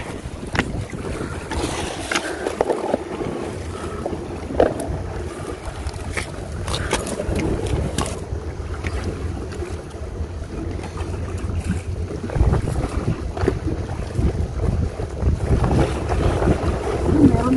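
Wind buffeting the microphone, a low rumble that grows stronger near the end, over the wash of sea waves against a rocky shore. A few sharp clicks and knocks in the first half.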